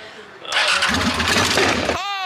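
A motorcycle engine starts suddenly about half a second in and keeps running loudly.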